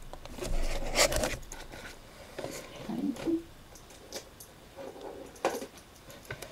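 Light clicks and rustles of small objects being handled and moved about while a small plastic watercolour palette is fetched, with a short low murmur about halfway through.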